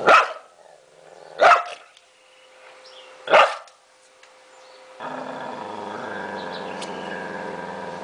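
A dog barks sharply three times, about one and a half to two seconds apart. From about five seconds in, a steady low sound follows without a break.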